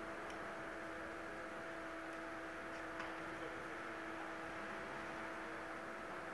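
A steady machine hum with a constant low tone and its overtone over a light hiss, broken by a couple of faint ticks.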